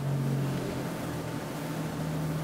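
Steady low hum of room tone, unchanging through the pause, with no other distinct sound.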